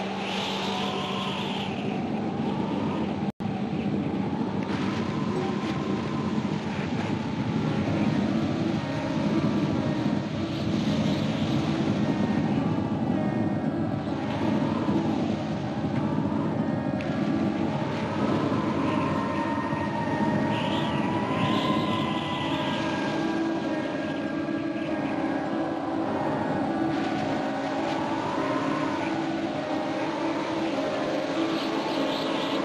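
Eerie dramatic soundtrack: sustained low droning tones under a high, wavering whine that slides up and down again and again, with a brief dropout about three seconds in.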